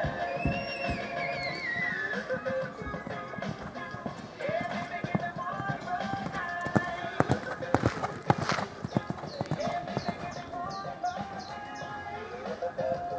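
Music playing over a public-address system, with a horse's hoofbeats as it canters on the sand arena. The hoofbeats are thickest about two-thirds of the way through.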